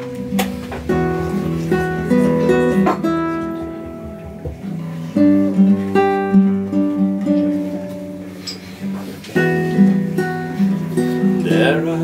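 Live band music led by a nylon-string classical guitar picking out the song's instrumental intro, note by note.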